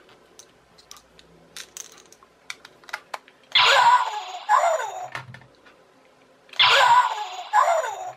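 Electronic zap sound effect from a toy alien-shooting gun and target set, played through a small toy speaker. It plays twice, about three seconds apart, each a short burst of hiss followed by falling tones. Faint plastic clicks come before it.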